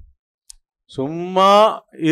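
A short pause broken by one small click, then a man speaking.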